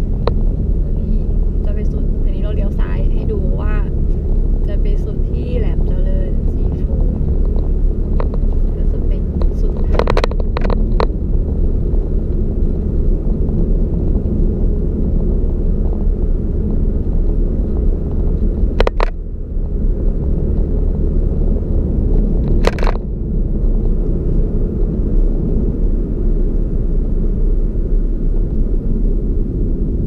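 Car driving along a road, heard from inside the cabin: a steady low rumble of engine and tyres, with a few sharp knocks about ten, nineteen and twenty-three seconds in.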